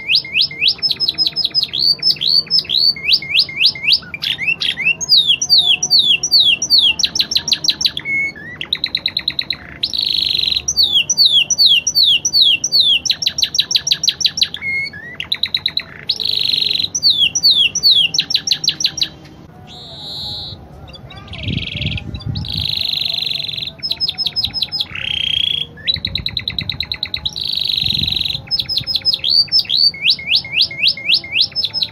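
Domestic canary singing a long, almost unbroken song: fast series of repeated down-slurred whistled notes alternating with buzzy rolling trills, with one short pause about two-thirds of the way through.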